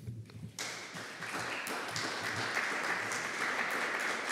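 Audience applauding, starting about half a second in and building to steady clapping.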